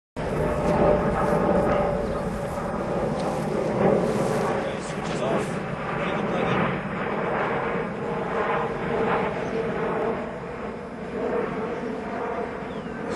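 Wind buffeting the microphone in an open field, with indistinct talking under it.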